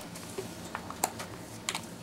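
Quiet room tone with three light, sharp clicks or taps spread over two seconds, the loudest about a second in.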